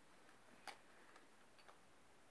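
Near silence with a few faint, short clicks; the clearest comes a little under a second in, with two weaker ones after it.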